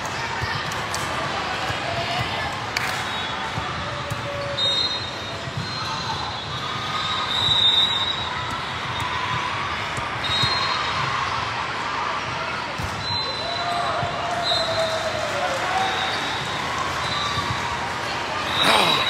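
Volleyball tournament hall ambience: many voices talking at once, volleyballs bouncing and being struck on the courts, and several short high squeaks, echoing in a large hall.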